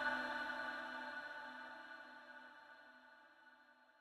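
The reverberant echo of a male Quran reciter's last held note dying away slowly, fading to near silence about three seconds in.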